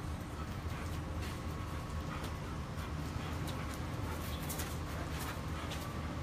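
Footsteps and scattered light clicks of walking over a steady low rumble, such as wind or handling on the microphone.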